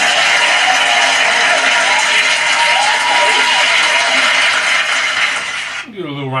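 Steady, loud rushing noise from the closing seconds of the music video's soundtrack. It starts suddenly as the song's music stops and cuts off suddenly about six seconds later.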